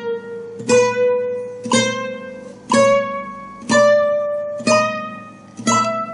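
Nylon-string flamenco guitar playing a slow chromatic scale on the first string. Single plucked notes come about once a second, each a semitone higher than the last, so the line climbs steadily.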